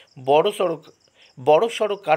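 A voice reading aloud in Bengali, with a short pause near the middle.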